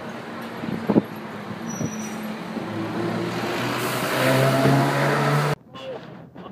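City street traffic with a car engine accelerating close by, its pitch rising as it grows louder over the last few seconds before stopping abruptly. There is a single sharp knock about a second in.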